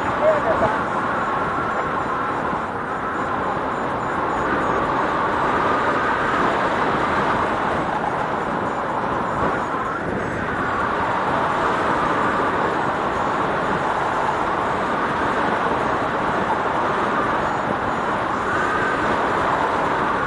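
Steady wind rushing over an action camera's microphone as a paraglider flies through the air, with faint wavering tones in the noise.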